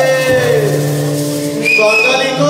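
Live band music: a long held note slides down in pitch and fades about half a second in, and a steady high whistle-like tone comes in near the end.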